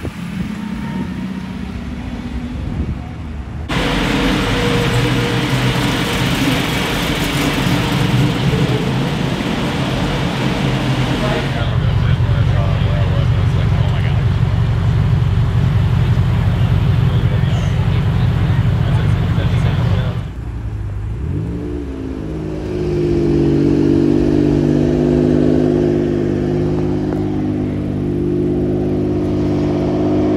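High-performance and classic car engines heard up close in a run of short clips: loud revving and acceleration, then a strong, steady deep engine note, then an engine running with a steady pitched note near the end. The sound changes sharply between clips.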